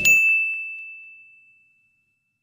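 A single high, bell-like ding sound effect rings and fades away over about a second and a half, as the background music cuts off just after the start.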